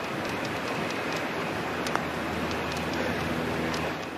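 A putter strikes a golf ball once, a light click about two seconds in, over a steady hiss of outdoor noise.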